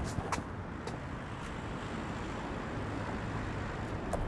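Road traffic on a busy street: a steady hum of passing cars, with a few light clicks in the first second or so.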